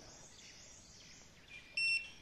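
Handheld rebar scanner giving one short, high electronic beep near the end, just after a fainter lower tone: the signal that it has located a steel reinforcing bar under the concrete cover.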